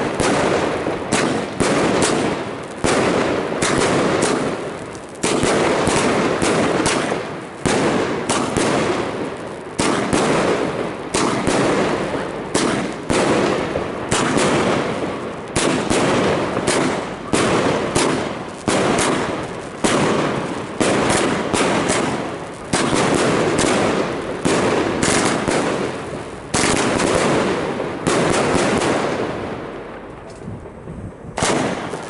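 Three Evolution Fireworks Rainbow Twinkler cakes with 30 mm tubes fired together: shots go off in steady succession, about one or two a second, each trailing off before the next.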